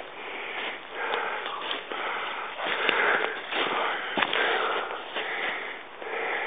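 A person breathing hard, in and out about once a second.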